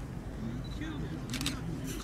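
Camera shutter clicking in two short, rapid bursts in the second half, over faint, indistinct voices in the background.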